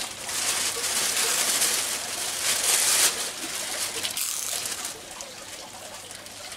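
Plastic bag of fish being cut open and pulled apart: a crinkling rustle of thin plastic, loudest over the first three seconds and then dying down.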